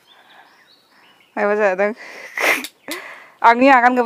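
A person sneezes: a short voiced intake sound, then a sharp breathy burst about half a second later. Voice follows near the end.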